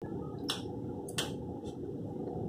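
Three short, sharp clicks from small parts being handled at a motorcycle headlamp during a parking-LED fit, the middle one loudest, over a steady low background noise.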